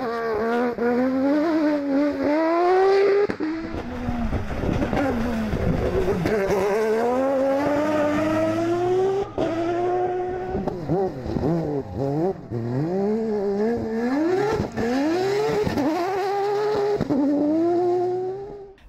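Off-road rally car engines revving hard at full throttle, the pitch climbing and dropping back again and again as the cars shift up through the gears on several passes.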